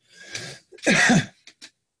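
A man coughing to clear his throat: a breathy rasp, then a louder harsh cough about a second in.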